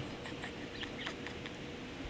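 Quiet background room tone with a faint steady hum and a few faint, light ticks in the first second.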